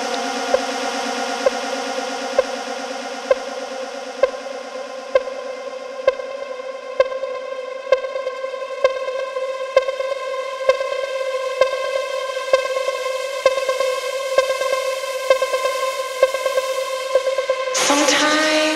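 Techno music: a held synthesizer chord under a kick drum beating about once a second, with more percussion hits filling in over the second half.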